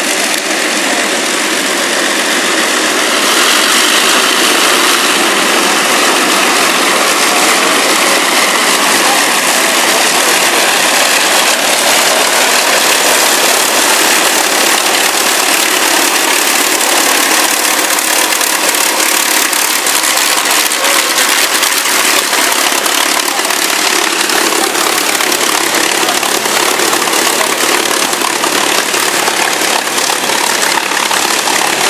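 Avro Lancaster bomber's four Rolls-Royce Merlin V12 engines running together at taxi power, a loud steady engine noise that gets louder about three seconds in as the aircraft comes close.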